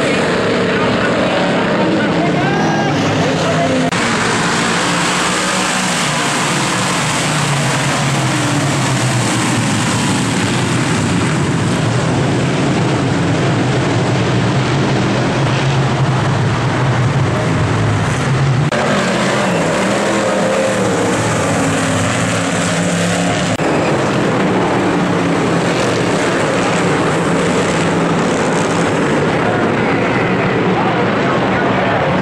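Engines of dirt modified race cars running at racing speed as a pack, loud and continuous, with abrupt shifts in the sound a few times where the footage is cut together.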